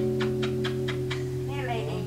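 Guitar played with rapid repeated picked strokes on a held chord, about five strokes a second, stopping about a second in. A voice starts speaking near the end, and a steady low hum runs underneath.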